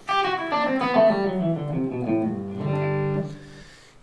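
Electric guitar playing a quick run of single notes through the G major scale, ending on a longer held note that rings and fades.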